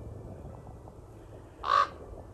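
A common raven gives a single short, loud call near the end: a raven mobbing a great horned owl.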